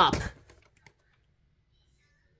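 A few faint, short clicks from a VHS tape box being turned over in the hand, after the tail of a spoken phrase; otherwise near silence.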